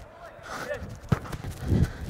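A soccer ball kicked during a passing drill, with a sharp knock a little past halfway, amid faint shouts of players.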